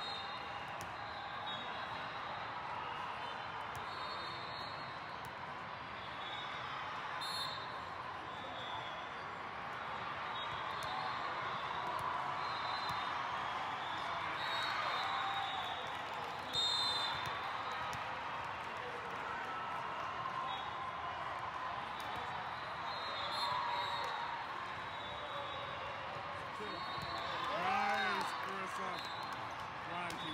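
Indoor volleyball hall ambience: many voices talking at once across a large echoing hall, with scattered thuds of volleyballs being hit and bounced, one sharper hit about halfway through. A single voice calls out loudly near the end.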